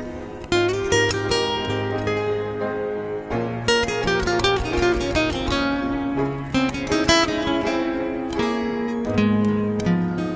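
Instrumental music: plucked and strummed acoustic guitar chords over held low bass notes.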